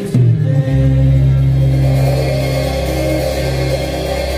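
Rock band backing track with a drum kit played over it: a couple of last drum hits, then about a second in the band holds a long final chord, electric guitars and bass ringing out and slowly fading.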